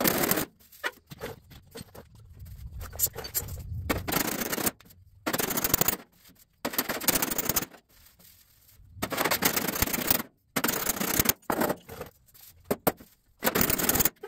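Pneumatic air hammer with a long bent bit, hammering the sheet-steel fender from behind in short bursts of rapid strikes with brief pauses between them: dents in the fender are being worked out.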